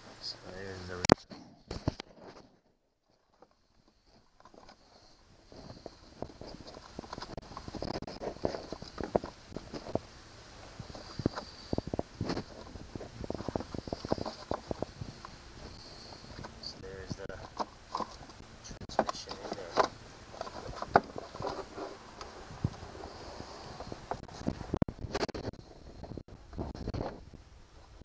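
Clicks, knocks and rattles of hard plastic parts being handled as the gear-shift lever and its transmission switch with its wiring connector are worked loose from a battery-powered ride-on toy, with a short silent gap about three seconds in.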